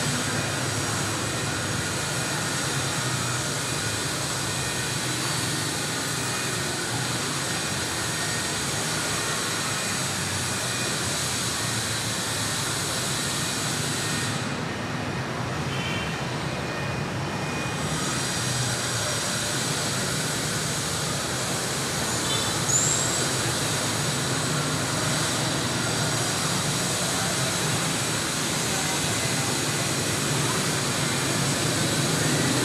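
Steady rushing background noise, with a brief high chirp about 23 seconds in.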